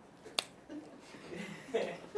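A single sharp click about half a second in, followed by faint low voices.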